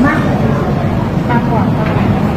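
Indistinct voices over a loud, steady low rumble of room noise.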